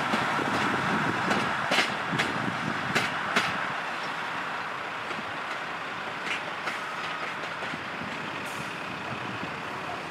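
A railway locomotive running away along the track, its rumble fading over the first few seconds. Several sharp clicks come during the louder part and two more about seven seconds in.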